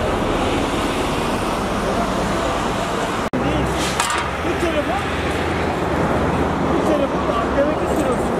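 Steady road traffic noise with indistinct voices of people talking. The sound briefly cuts out about three seconds in.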